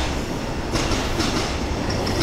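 A steady, loud low rumble.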